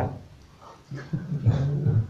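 A man's low, throaty chuckle, a few short voiced pulses that build up in the second half.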